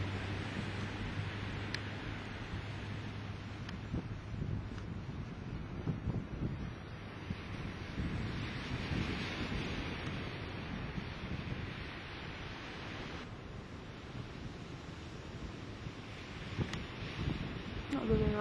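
Wind blowing on the camcorder microphone, mixed with the steady wash of ocean surf.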